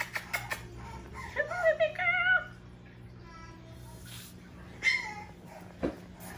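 French bulldog puppy whining in high, wavering cries, one run of them about a second in and a short one near the end. A few light clicks come just at the start.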